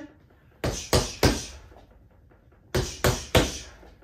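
Punches landing on a Quiet Punch doorway-mounted punching bag: two quick one-two-three combinations (jab, cross, lead hook), each a run of three sharp thuds about a third of a second apart.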